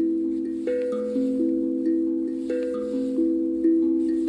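Hapi steel tongue drum tuned to the A Akebono pentatonic scale, played with mallets: single notes struck several times a second, each ringing on beneath the next in a slow melody.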